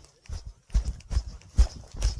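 A hiker's quick, regular footsteps on a dirt and gravel mountain trail, about five steps, each a dull thud with a gritty scuff.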